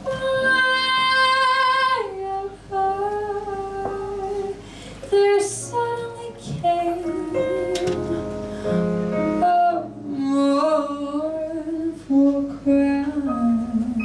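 A woman singing a jazz song live, with long held and sliding notes, over a small band with piano and bass.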